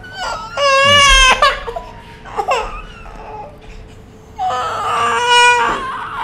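A baby crying in two long, high wails, the first starting about half a second in and the second about four and a half seconds in.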